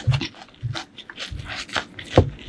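Close-miked wet chewing and lip-smacking of a mouthful of spicy noodles: a quick series of short smacks and mouth clicks.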